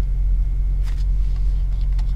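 A steady low hum with a few faint clicks, one a little under a second in and another near the middle.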